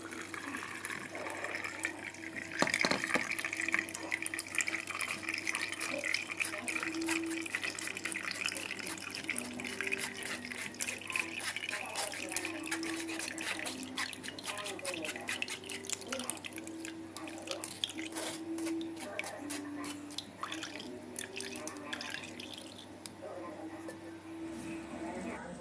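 Blended green juice pouring through a fine metal mesh strainer into a glass, trickling and dripping. Through the middle and later part there are many small clicks and scrapes as the pulp is worked in the strainer.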